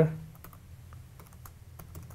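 Computer keyboard being typed on, an irregular run of light key clicks as a password is entered.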